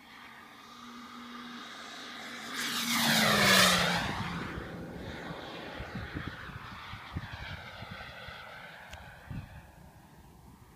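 Radio-controlled Ultraflash model jet making a fly-by: its engine noise swells to a loud peak about three and a half seconds in, drops in pitch as the jet passes, then fades away.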